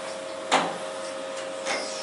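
Otis hydraulic elevator running with a steady, even hum heard from inside the cab. A sharp knock comes about half a second in and a fainter one near the end.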